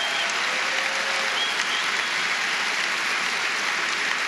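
Large audience applauding steadily, a dense even clapping with no break.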